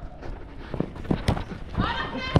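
Running footsteps and ball touches on artificial turf: a few short dull thuds at uneven intervals. A player's shout comes in near the end.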